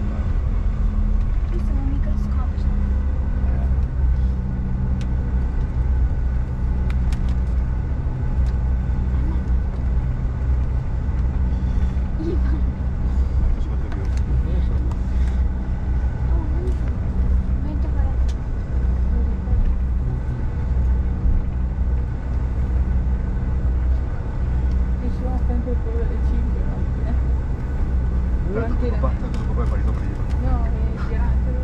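Cabin noise of a Bombardier CRJ1000 taxiing: a steady low rumble and hum from its engines at taxi power, heard from inside the cabin.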